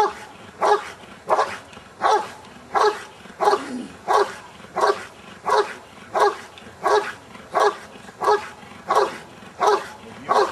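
Belgian Malinois barking at a helper in the blind during a Schutzhund bark-and-hold, a steady, regular run of single barks at about three every two seconds. The continuous barking is the dog guarding the cornered helper and signalling the handler without biting.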